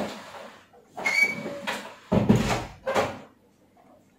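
Plastic wire connector on an air-conditioner blower control board being wiggled in its header, a few rubbing, scraping bursts with a short squeak about a second in and the loudest burst about two seconds in. It is a wiggle test for an intermittent connection at a dry solder joint, the resistance changing as the connector moves.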